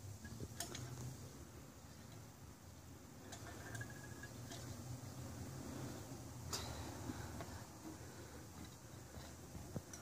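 Faint scattered clicks from a caulk gun as Liquid Nails construction adhesive is squeezed into the seam between plywood subfloor and wall, over a low steady hum.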